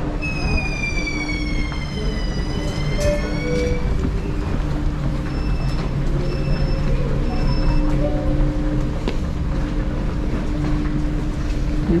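Metro station sounds. An electric whine falls in pitch for about two seconds and then rises again, typical of a metro train's traction motors. A few seconds later come three short high beeps, all over a steady hum.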